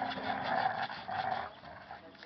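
Dogs growling while tugging against each other over a bottle, a rough, fluctuating growl that fades out about a second and a half in.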